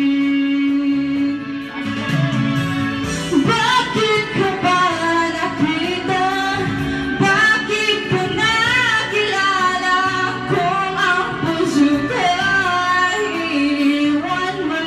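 A woman singing into a handheld microphone over instrumental accompaniment. She holds one long note, then moves into a melodic phrase about three seconds in.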